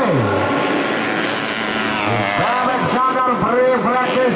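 Dirt-bike engines revving hard in quick surges, their pitch repeatedly rising and falling with the throttle and gear changes. Right at the start, one engine's pitch drops sharply.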